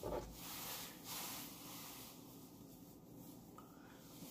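Faint rubbing and rustling close to the microphone, a few soft scrapes in the first second and a half, then low room hiss.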